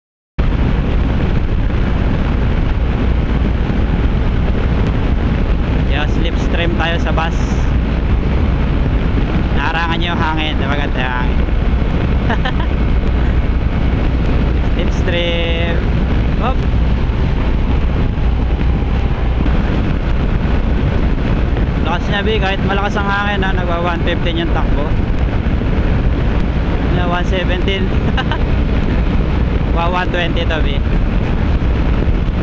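Wind rushing over the microphone of a camera on a scooter ridden at road speed, a steady low roar that cuts in suddenly about half a second in, with short bursts of muffled talk under it.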